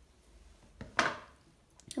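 A sharp knock about a second in, just after a softer one: a potter's hand tool set down on a hard surface after cutting a clay coil.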